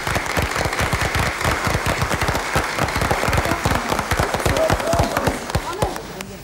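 Audience applauding: dense, steady clapping right after a song has ended.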